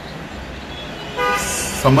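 A single short horn toot, one steady pitch lasting about half a second, sounding a little past the middle, over a low background hum.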